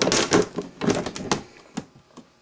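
A quick run of sharp clicks and knocks, handling noise, through the first second and a half, then a few faint ticks.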